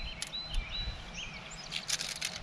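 Birds chirping in short, high calls over a low outdoor rumble, with a few light clicks near the end.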